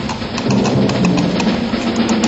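Coconut halves knocked together in a rapid clip-clop, imitating a horse's hooves, with a low steady hum underneath.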